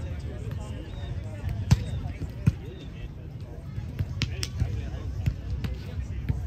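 Several sharp thuds of a volleyball being struck or bouncing. The two loudest come about a second apart near the two-second mark, and a few lighter ones follow later, over a steady low rumble and faint voices.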